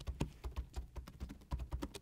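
Computer keyboard typing: a quick, uneven run of keystrokes as a line of text is typed.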